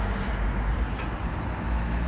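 Street traffic noise: a steady low engine hum under an even hiss of traffic.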